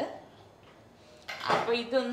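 Near quiet for about the first second, then a light metal clink of cookware and a woman speaking briefly near the end.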